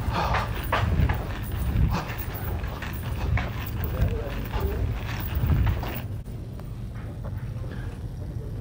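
Footsteps of someone walking with a handheld camera, heard as irregular low thumps about once a second, with faint voices in the background. It goes quieter for the last two seconds.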